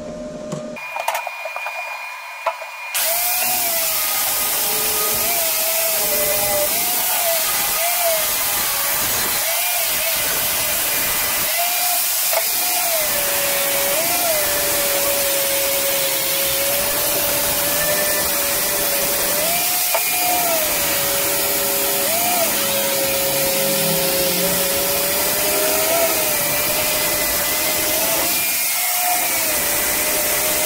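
Electric angle grinder grinding the corners of a steel-plate bucket: a steady loud hiss of disc on steel from about three seconds in. The motor's whine dips and recovers again and again as the disc is pressed into the metal and eased off.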